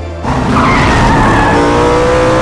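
Racing car engine at high revs with tyres squealing, cutting in suddenly about a quarter second in, its pitch rising.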